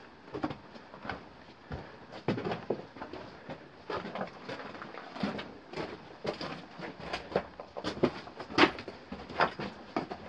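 Footsteps crunching and scuffing over loose rock and gravel on a mine tunnel floor: an irregular series of crunches.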